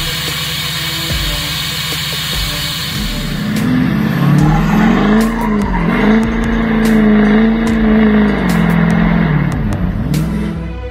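A Duramax diesel pickup truck being driven, its engine note rising and falling repeatedly from about three and a half seconds in, with background music.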